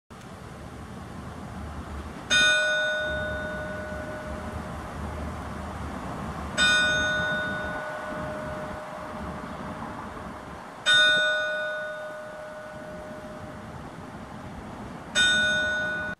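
A single church bell tolling four slow strokes, about four seconds apart, each ringing on and fading away before the next.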